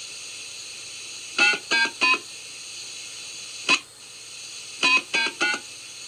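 Sound effect from the Mego 2-XL robot's 8-track tape, played through its small speaker: three quick pitched notes, a single one, then three more, over steady tape hiss. It is a pause while the robot pretends to consult its memory banks.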